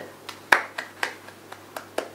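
A person clapping her hands: about six sharp, uneven claps, the loudest about half a second in.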